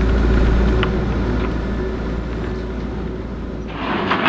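Hydraulic excavator's diesel engine running steadily with a low rumble while it works to pull the old corrugated metal culvert out of the creek. There are a couple of faint clicks about a second in.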